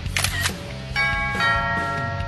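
Subscribe-button animation sound effects over background music with a beat: a short click at the start, then about a second in a bright bell chime that keeps ringing past the end.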